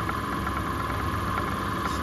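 Distributor test machine spinning an Accel 59130 HEI distributor at a steady speed, held at about 2600 engine RPM while the mechanical advance is read: a steady, even mechanical whir.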